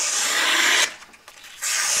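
A large folding knife's blade slicing through a sheet of paper in two strokes, each about a second long, with a short pause between them. The cuts go through cleanly, a sign of a sharp edge.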